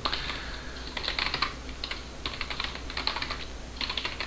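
Computer keyboard typing in several short runs of quick keystrokes while a shell command is entered.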